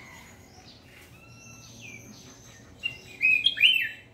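A caged red-whiskered bulbul singing: a few soft chirps, then a loud, short warbling phrase of falling whistled notes near the end.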